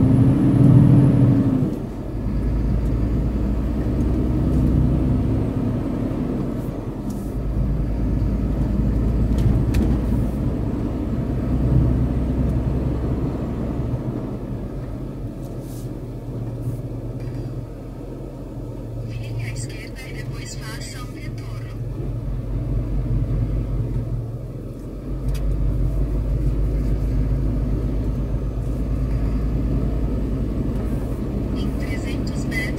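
Truck engine running as the truck drives slowly along a road, a steady low rumble that swells and eases with the throttle. A short burst of rattling comes in about two-thirds of the way through.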